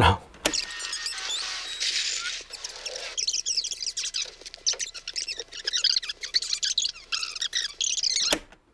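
A fast-forward transition sound effect: a hissing sweep, then a stream of high, twittering chirps like audio played back at high speed.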